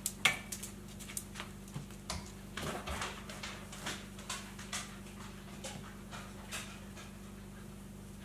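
Faint rustling of curtain fabric being folded into a pleat and pinned by hand, with scattered light ticks, over a steady low hum.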